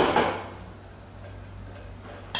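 A brief clink of a steel ladle lifted out of an aluminium pressure cooker at the very start. Then a quiet kitchen background with a steady low hum.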